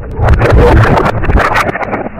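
Bumpy plastic balls plunging into water: a loud splashing, bubbling rush with scattered clicks, easing off in the last half second.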